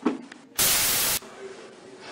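A brief thump at the very start. About half a second in comes a loud burst of static hiss, even across all pitches, lasting about two-thirds of a second and cutting off abruptly.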